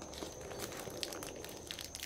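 Paper burger wrapper crinkling as hands unfold it, a string of small crackles.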